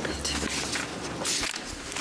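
Scattered rustling and shuffling footstep noises over a low hum.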